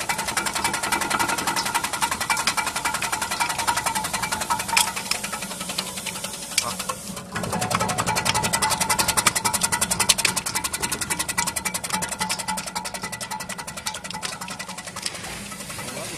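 Electric banana-chip slicing machine running, its rotary blade disc cutting with a rapid, even ticking over a steady motor hum, with a brief dip about seven seconds in.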